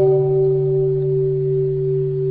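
A steady, held musical drone: a low tone with a higher ringing overtone above it, growing slowly a little quieter.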